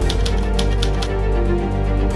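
Old mechanical typewriter keys clacking, about six quick strokes in the first second, over background music with a held low bass note.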